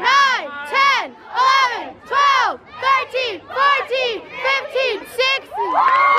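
High school cheerleading squad shouting a sideline cheer in unison: a rhythmic chant of loud, drawn-out shouted syllables, a little under two a second.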